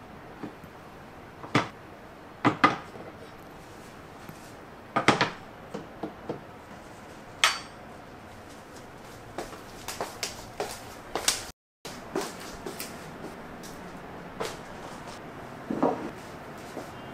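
Scattered clinks and knocks of tableware being handled: a butter knife tapping and scraping on ceramic plates, then plates and glasses on a wooden tray and a plate set down on a wooden table. The sharpest knocks come in the first half.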